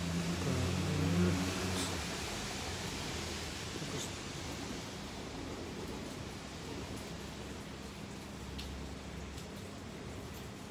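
Steady background noise with no clear source, after a low voice that fades out in the first second or two. A few faint clicks sound over it.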